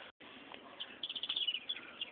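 Faint, quick high-pitched bird chirps, a rapid series starting about a second in.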